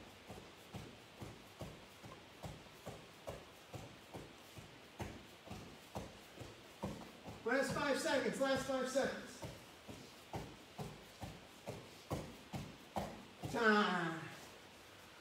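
Rhythmic soft padding of feet on a vinyl-covered training mat, about three a second, as a man does mountain climbers. A man's voice comes in briefly around the middle and again at the end.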